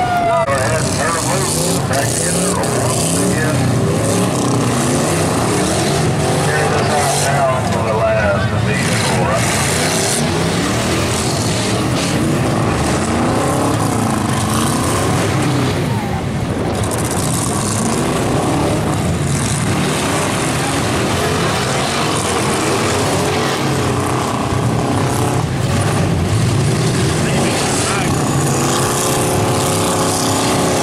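Several demolition derby cars' engines running and revving at once, their pitch rising and falling, with a few sharp knocks of cars colliding.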